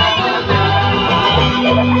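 Live band music with strummed acoustic guitars over a bass line that moves in held notes, played on stage.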